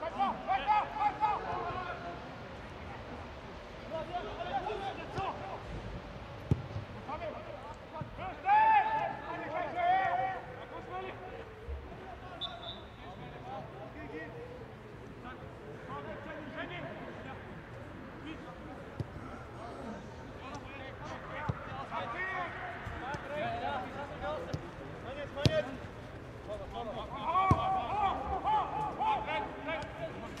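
Football players shouting and calling to each other on the pitch in short bursts, with a few sharp thuds of the ball being kicked.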